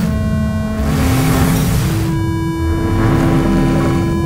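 Live laptop electronic music: held synthesized tones, each rich in overtones, a new one starting at the beginning and a higher one about two seconds in, over swells of noise and a low wavering rumble.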